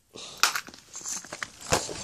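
Handling noise: rustling and scattered light clicks of plastic tackle and lures being moved about by hand, with a sharper click near the end.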